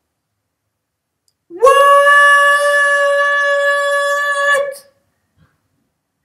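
A single loud, steady, horn-like note that slurs briefly upward about a second and a half in, is held for about three seconds and then stops.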